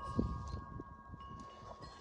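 Wind chimes ringing faintly: several long, steady tones at different pitches overlapping, over light wind noise.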